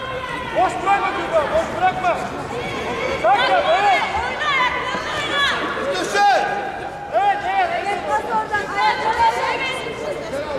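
Several men's voices shouting short, repeated calls that overlap, as coaches and spectators call out to the judoka during a bout.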